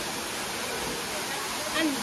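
Waterfall rushing steadily, with a voice speaking briefly near the end.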